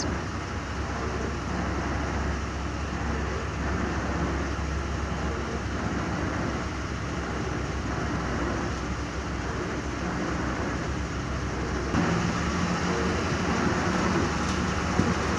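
Steady cabin noise of a vehicle driving through floodwater: a low engine and road rumble with the hiss of tyres in water. Near the end a low hum comes in a little louder.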